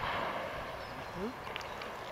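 Quiet open-air background: a steady hiss of wind. About a second in there is one faint, short rising call.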